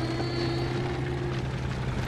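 Tank engines running in a war film's soundtrack: a steady rumble with a constant low hum underneath.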